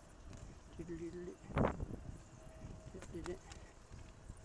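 Wind and road rumble on a moving bicycle's camera microphone, with a short pitched sound coming back about every two seconds and a louder rustling knock about a second and a half in.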